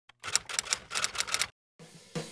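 A rapid, uneven run of about ten sharp clacks lasting just over a second, which then cuts off abruptly.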